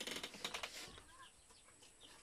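Faint peeping of young chickens in a bamboo coop: a few short chirps, over a brief rustle in the first second.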